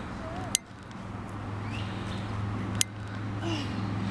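A steady low motor hum that grows slowly louder, cut by two sharp clicks, one about half a second in and one near three seconds in.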